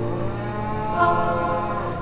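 A cow mooing: one long low call of about two seconds that swells and bends in pitch, peaking about a second in.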